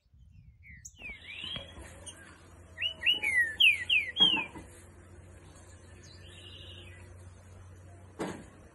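A green-winged saltator (trinca-ferro) singing: a couple of whistled notes about a second in, then a loud run of about six clear, quickly slurred whistles around the middle, followed by softer notes.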